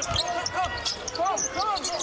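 Basketball being dribbled on a hardwood court, with sneakers squeaking in short rising-and-falling chirps, several of them in the second half.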